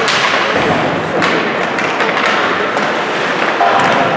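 Ice hockey play in an arena: a series of sharp knocks and thuds of sticks and puck striking, over steady noisy arena background.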